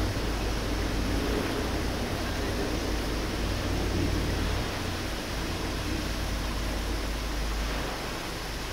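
Steady background noise: an even hiss with a low rumble underneath, and no distinct hoofbeats or other events standing out.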